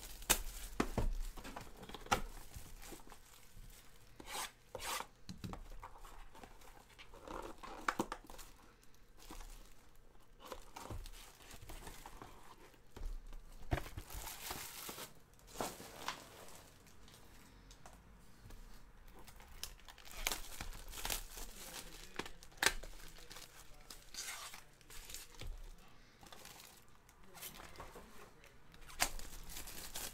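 Panini Select baseball card packs being torn open and their wrappers crinkled as the cards are handled: irregular bursts of tearing and rustling, with no steady sound underneath.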